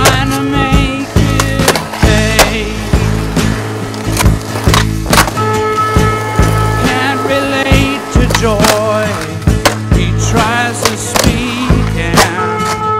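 A music track with a steady bass beat and snatches of wavering sung vocals, over the sound of skateboards: urethane wheels rolling on concrete and the sharp clacks of boards popping and landing.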